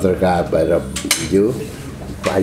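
A man speaking, with a sharp clink about a second in.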